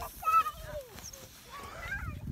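A man's voice says "look out", and a fainter voice follows near the end, over a low rumble of wind and handling noise on a handheld microphone.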